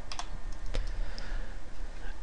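A few isolated keystrokes on a computer keyboard within the first second, over a low steady hum.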